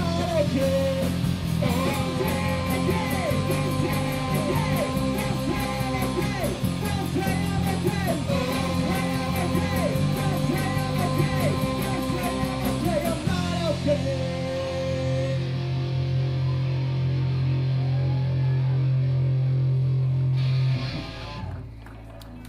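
Live rock band of electric guitars, bass and drums playing loudly. About thirteen seconds in the drums and cymbals stop and a held chord rings out for several seconds, then cuts off about a second before the end: the song finishing.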